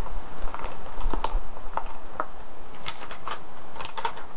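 Irregular light clicks and taps of small items being handled and put back into a bag.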